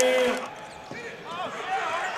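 A sportscaster's voice over basketball game sound: his last word trails off in the first half-second, then there is a lull of faint court noise, and a voice comes back in near the end.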